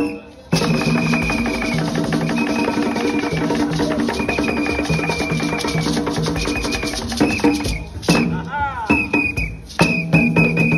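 Live African hand-drum ensemble playing with a beaded gourd shaker, kicking in suddenly about half a second in after a short pause; dense drum strokes run under a steady pitched line. Near the end the playing breaks briefly and a voice calls out before the drums return.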